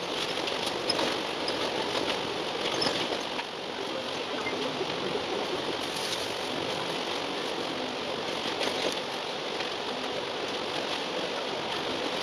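Steady running noise of an Alexander Dennis Enviro400 double-decker bus heard from inside the upper deck in motion, with engine and road noise and a few faint rattles. The sound is sped up fourfold.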